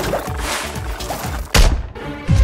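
Cartoon background music with small sliding sound effects, then a single loud thunk about one and a half seconds in that rings briefly and stops sharply.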